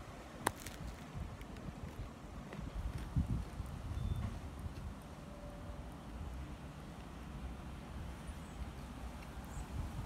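A bite into a crusty bread roll gives a sharp crack about half a second in, followed by soft chewing over a faint low outdoor rumble.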